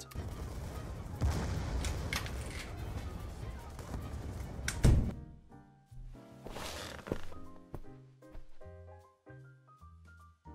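Sound track of an animated shot: action-style video-game sound effects, a dense noisy rumble with a loud hit about five seconds in, followed by a quieter stretch of simple music notes.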